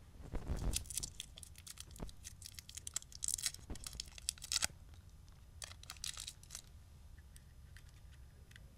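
Cough lolly wrapper being unwrapped by hand, crinkling: a dense run of sharp crackles for the first four and a half seconds, then a few more about six seconds in.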